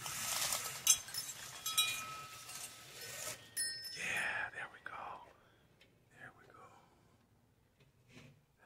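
Horizontal window blinds being pulled up by their cord, the slats clattering and clinking together for about three seconds. About four seconds in there is a short breathy voice sound.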